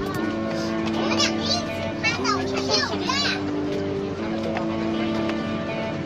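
Music with long held low notes that change every second or so. Brief high, gliding voice-like sounds rise over it about a second in and again around three seconds.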